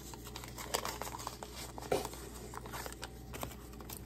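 Small kraft-paper package handled and opened by hand: light paper crinkling and rustling with a few soft clicks.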